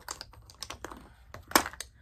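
A run of light plastic clicks and taps, with one louder click about one and a half seconds in: makeup compacts and containers being handled and opened on a table.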